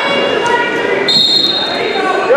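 Voices shouting in a gym, then a whistle blown in one steady high note for about the last second.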